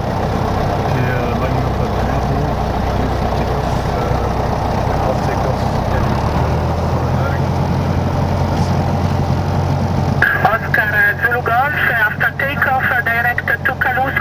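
Single-engine Piper light aircraft's piston engine and propeller running steadily, heard from inside the cockpit. About ten seconds in, a radio voice comes in over the engine.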